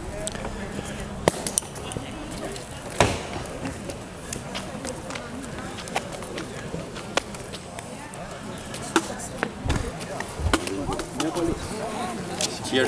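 Background chatter of several people talking, with scattered sharp knocks and clicks every second or two.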